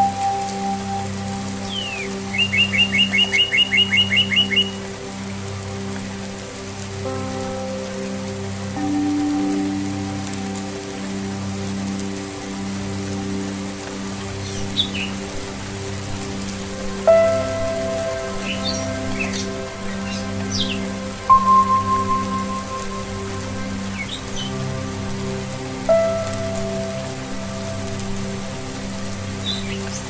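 Steady rain with Tibetan singing-bowl music: long, held ringing tones, with three fresh strikes that ring out and fade in the second half. A bird sings a rapid trill of repeated notes a few seconds in, and short chirps come through the middle.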